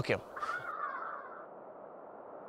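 A crow cawing once: a single hoarse call of about a second that fades out.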